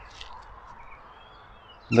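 Quiet rural outdoor ambience with faint, distant bird calls, including a soft gliding call a little past the middle. A man's voice begins just at the end.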